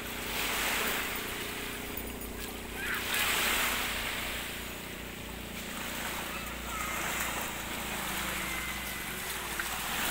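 Small waves washing in over shallow water at the shoreline. The surf swells and fades about every three to four seconds, with a faint steady low hum underneath.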